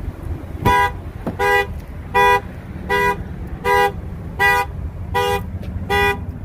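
Car alarm sounding the vehicle's horn in a steady run of short honks, about one every three quarters of a second, eight in all, starting just under a second in.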